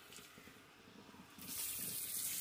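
Water from a shampoo-bowl hand sprayer, faint at first, then running steadily again from about a second and a half in as it sprays into the basin.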